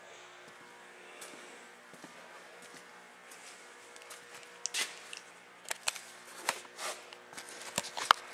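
Quiet shop room tone with a faint steady hum, broken by scattered light clicks and knocks from about halfway in: handling noise and footsteps while the camera is carried around the tractor and the siphon line is picked up.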